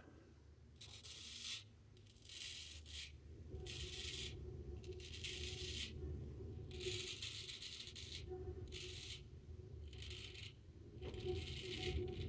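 Straight razor, a late Palmera 14 with a round nose, scraping through lathered stubble in about eight short strokes, each under a second long. The edge is very sharp and cuts with little drag.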